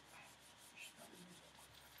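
Faint strokes of a dry-erase marker rubbing on a whiteboard, barely above the room's quiet.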